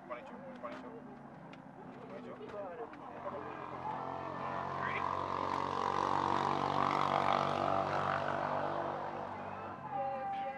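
A passing engine drone, swelling from about three seconds in to its loudest around seven seconds, then fading near the end.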